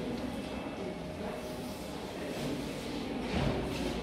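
Room tone of a large hall with faint voices of other visitors in the background.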